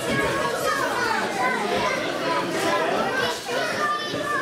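Spectators, many of them children, shouting and talking over one another in a continuous crowd chatter.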